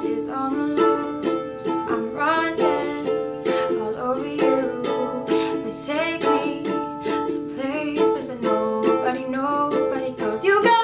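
Kala ukulele strummed in a steady rhythm, with a woman's voice singing along at times.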